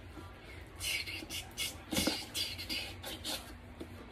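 Small utility knife slitting the seal on a cardboard product box: a run of short, scratchy strokes.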